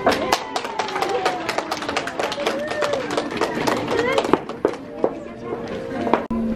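Scattered clapping from a small audience just after a child's piano piece ends, with voices talking over it.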